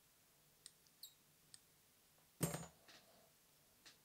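Faint, short clicks of fine fly-tying scissors snipping a synthetic yarn tag close to a hook, three in the first second and a half, with a louder knock about two and a half seconds in and a couple more faint clicks after it.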